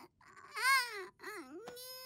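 A baby crying: a rising-and-falling wail about half a second in, a couple of short sobs, then one long held cry near the end.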